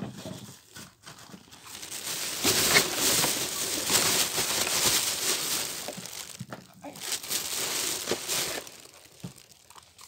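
Thin plastic bag crinkling and rustling as it is handled close to the microphone, in two long spells with a short break between.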